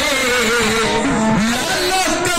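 Kirtan singing: a voice holds long notes that waver in pitch, with a slide downward about a second and a half in.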